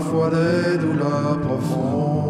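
Music from a musical-theatre song: voices holding a chanted note over a steady accompaniment with a repeating low pattern, and a short hiss near the end.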